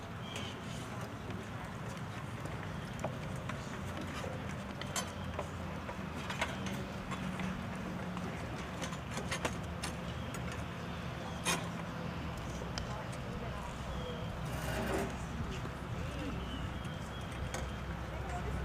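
Open-air background with faint voices and a steady low hum, broken by a few sharp clicks; the band is not yet playing.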